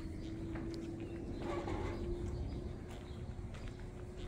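Slow footsteps on the wooden plank floor of a covered bridge, with birds calling and a steady low hum underneath.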